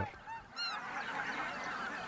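A flock of whooper swans calling: many short, rising-and-falling calls overlapping, the clearest ones about half a second in.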